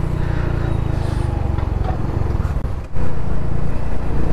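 Honda Pop 110i's small single-cylinder four-stroke engine running steadily while riding, with wind on the helmet-mounted microphone; it briefly drops, then comes back louder about three seconds in.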